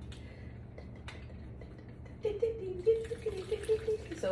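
Coconut water glugging as it pours from a carton's spout into a blender jar, starting a little past halfway, in quick gurgles of about five a second. A single click comes about a second in.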